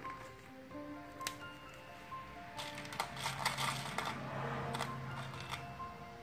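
Background music with held notes, over which small hard pieces clatter and rattle as a hand rummages in a plastic tub, from about two and a half to five and a half seconds in. A single click comes about a second in.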